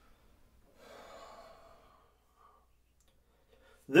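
A man's exasperated sigh: one breathy exhale lasting a little over a second.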